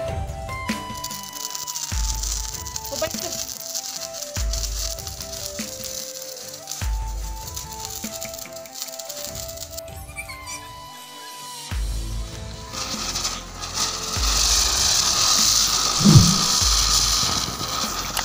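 Background music with a slow, regular bass beat. From about twelve seconds in, a lit ground firework showering sparks adds a loud, steady hiss, with one short low thud near the end.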